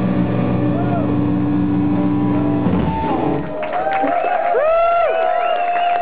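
Rock band's final chord ringing out with guitars and keyboard for about three seconds, then breaking off as the song ends. The audience then responds with cheering, shouts and whistles.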